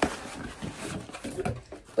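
Cardboard box and foam packaging rustling and scraping as an item is worked out of its box, starting with a sharp click and followed by scattered small clicks.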